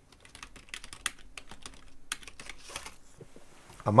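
Typing on a computer keyboard: a quick, irregular run of key clicks for about three seconds.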